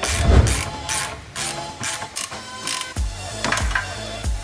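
Hand socket ratchet clicking in short repeated strokes as the nut on a front suspension control arm bolt is turned, with background music with a beat underneath.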